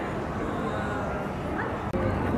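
Indistinct background voices and general room noise of a busy café, steady throughout, with a short rising cry-like sound near the end.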